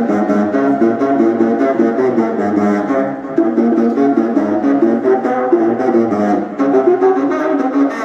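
Live band music led by a saxophone playing a busy run of quickly changing notes over drums and keyboards.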